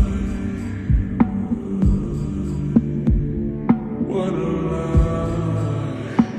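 Instrumental passage of a sped-up R&B track: sustained, humming low chords with deep bass-drum thumps at an uneven pace and light clicking percussion between them. A brighter, fuller chord comes in about four seconds in.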